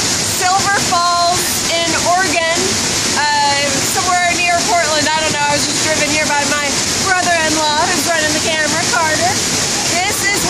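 Waterfall pouring close by, a steady, loud rush of falling water heard from just behind the falling curtain. A woman's voice talks over it throughout.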